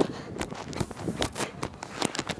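Irregular soft clicks and knocks with rustling, picked up by a microphone worn on a football player's pads as he skips across the field: footfalls, and pads and jersey shifting against the mic.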